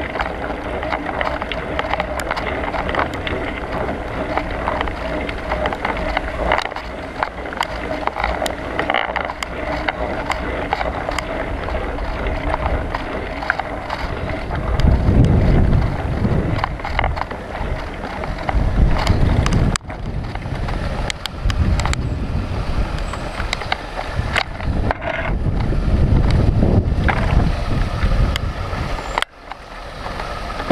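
Riding noise from an action camera mounted on a bicycle's handlebars: a steady rush of tyres on a rough path with frequent small rattles and knocks from the bike and mount. Wind buffets the microphone in heavy low gusts about halfway through and again near the end.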